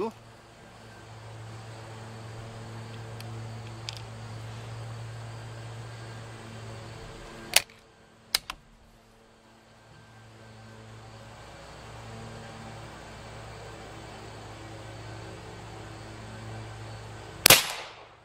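A single loud, sharp shot from an unsuppressed Umarex Gauntlet 30 PCP air rifle near the end, with a short ringing tail. Before it are a steady low hum and two smaller sharp clicks about eight seconds in.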